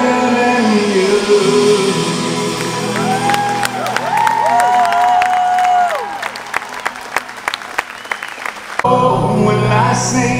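Live pop-rock band ending a song: a sung line trails off and the bass drops out, then the audience cheers with whoops and claps. About nine seconds in, the full band comes back in loud for the next song.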